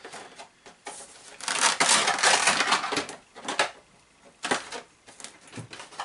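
Plastic RC truck body shell being pressed down and fitted onto the chassis: crinkling and clattering plastic with several sharp clicks, loudest in a burst of about a second and a half early on.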